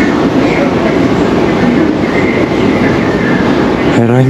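A loud, steady rolling rumble with a fast rattle running through it, like wheels turning over a ridged or jointed surface.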